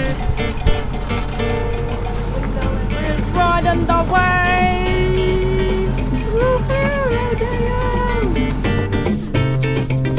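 Background music with a steady beat, and a gliding melody line through the middle.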